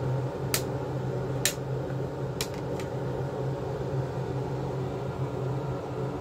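Steady mechanical hum, with four light sharp clicks in the first three seconds from the plastic eyeshadow palette case being handled.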